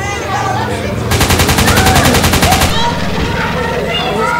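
A burst of automatic gunfire, about a dozen shots a second, starts about a second in and lasts about a second and a half. Throughout, people are yelling and crying.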